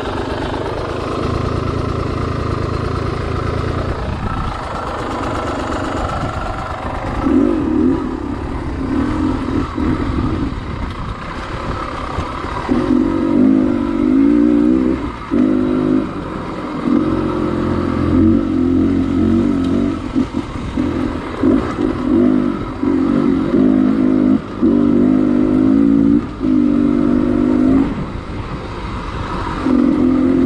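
Enduro dirt bike engine on rocky singletrack: it runs steadily for the first several seconds, then is worked on and off the throttle in repeated short bursts of a second or two each.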